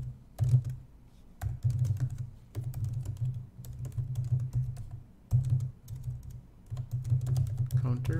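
Computer keyboard typing: fast runs of keystrokes, each a sharp click with a low thud, broken by short pauses about a second in and a little past the middle.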